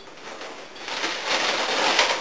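Crinkly rustling of a cereal box and its plastic inner bag being opened and handled, growing louder about a second in.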